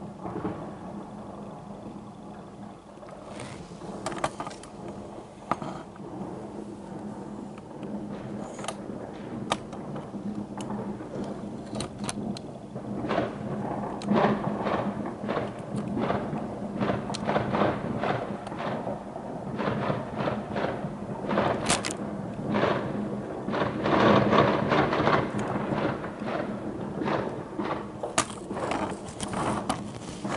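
New Year's fireworks going off: a run of bangs and crackles, sparse at first and much denser from about halfway through.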